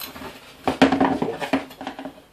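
Steel screwdrivers knocking and scraping against a wheelchair wheel's rim while the bead of a solid rubber tire is pried into it. A quick run of clattering knocks starts about two-thirds of a second in and lasts most of a second.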